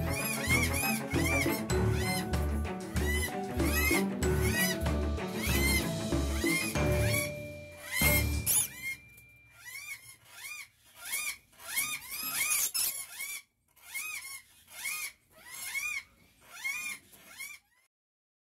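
Background music with a steady beat that stops about halfway through. Short squeaky chirps from rainbow lorikeets repeat about once or twice a second, going on alone after the music ends.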